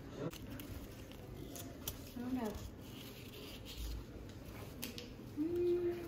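Faint crinkling and rubbing of a paper banknote being folded by hand, in short scattered rustles.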